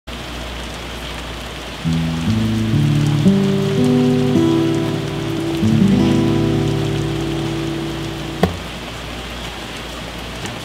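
Steady rain, joined about two seconds in by a slow phrase of sustained musical notes that ends with a sharp knock near the end.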